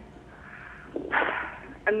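A short, sharp breath from a person on a telephone line, about a second in, during a pause in her speech.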